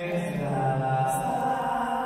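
Playback of a Vietnamese bolero song: a solo vocal holds a long sung note over sustained backing chords, with a hall reverb added to the voice. The voice is strongest in the first second and a half, then falls back under the held accompaniment.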